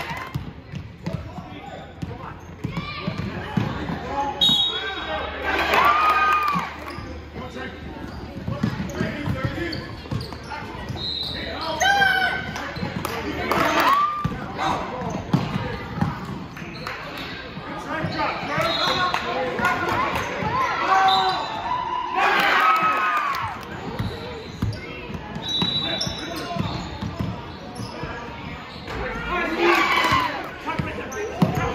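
Basketball game sounds in a gym: a ball bouncing on the hardwood floor, sneakers squeaking, and players and spectators calling out.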